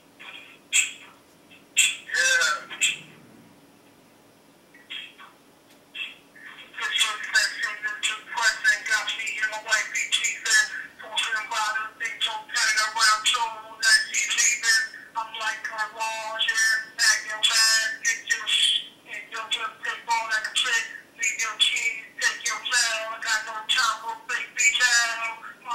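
A man rapping a verse in a fast, unbroken flow, heard over a phone line with a thin, squawky tone. A few short vocal sounds and a pause come first; the rapping starts about seven seconds in.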